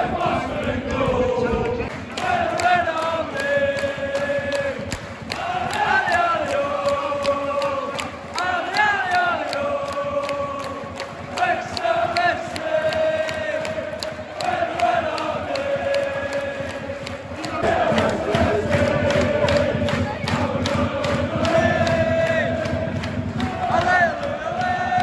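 Football crowd singing a chant together, many voices holding long notes in repeating phrases.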